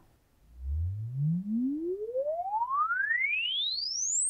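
A single pure test tone sweeping smoothly upward in pitch, from a low hum to a high whistle. It starts about half a second in and is still rising at the end. It is a sine sweep played to measure the ear's response at the in-ear microphone.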